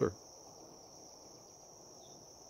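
A steady, high-pitched insect chorus, an even drone that does not change.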